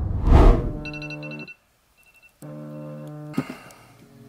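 A smartphone alarm tone chiming, cut off abruptly and then sounding again briefly before fading, after a soft thump at the start.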